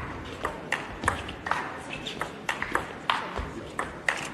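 A table tennis rally: the ball clicks sharply off the bats and the table, about three clicks a second at an uneven rhythm.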